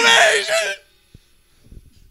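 A song with singing voices that stops abruptly under a second in, followed by near silence with a few faint clicks.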